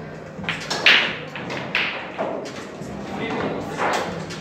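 Pool balls knocking together in a pool hall: several sharp clacks with short ringing, the loudest about a second in, over background chatter.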